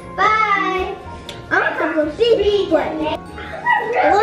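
Young children's voices, talking and exclaiming in short bursts, over background music.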